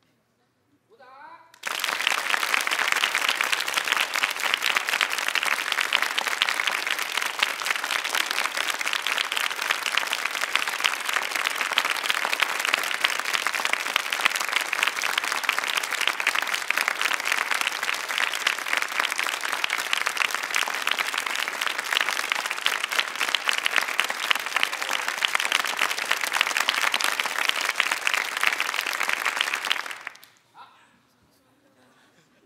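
Studio audience applauding: dense, steady clapping from many hands that starts about a second and a half in and stops abruptly at the end.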